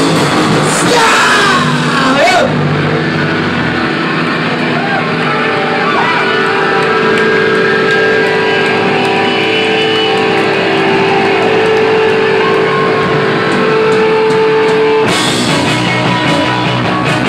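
Garage rock band playing live and loud, recorded from inside the crowd. A few seconds in, the drums and cymbals drop out, leaving guitar and a long held note. The full band crashes back in about a second before the end.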